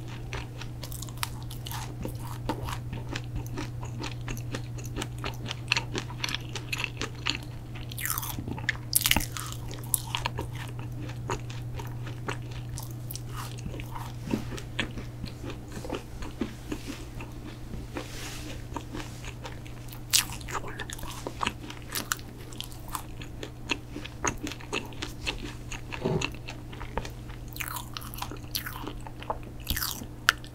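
Close-miked chewing of thick protein cookies: soft crunches and wet mouth clicks come in irregular clusters, with a low steady hum running underneath.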